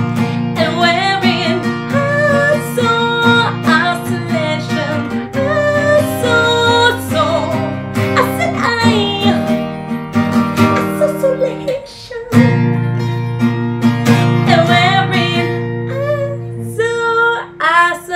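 Acoustic guitar strummed in chords with a woman singing over it. The strumming breaks off briefly about two-thirds through, then stops near the end while her voice carries on.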